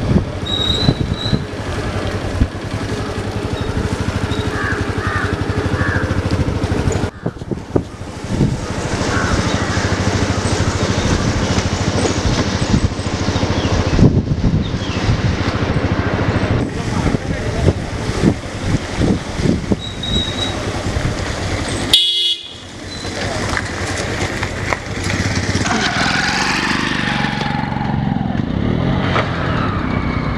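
Street noise heard from a moving vehicle: heavy wind buffeting on the microphone over a running engine, with a few short horn toots. The sound drops out briefly about two-thirds of the way through.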